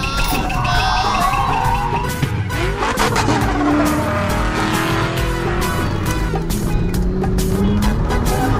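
Race-car sound effects, an engine revving up and down with tyres squealing, over background music with a steady beat, standing in for a toy remote-control sports car driving across dirt.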